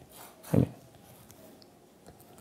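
A man's single brief low vocal sound, a short 'hm', about half a second in, with faint room tone around it.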